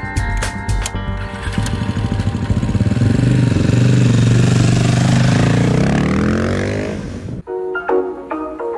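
Motorcycle engine starting and running, holding steady, then rising in pitch as it revs, and cutting off suddenly near the end.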